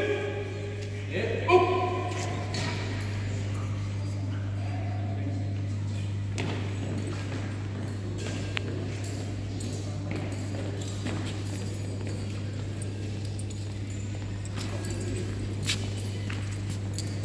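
Firefighters' honour guard walking on a concrete floor, their footsteps faint and irregular over a steady low hum. A short burst of a man's voice comes about a second in.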